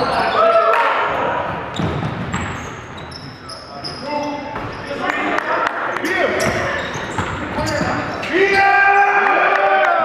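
Basketball game sounds echoing in a gym: a ball bouncing on the hardwood court, sneakers squeaking and players' voices calling out. The voices are loudest near the end.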